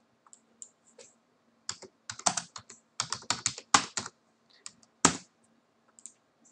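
Typing on a computer keyboard. A few faint keystrokes come first, then two quick runs of keystrokes in the middle and a single last key near the end.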